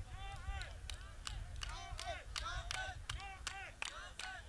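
Short, repeated shouted calls from people around the cage, fairly quiet, over a low arena rumble, with sharp clicks or slaps scattered between them.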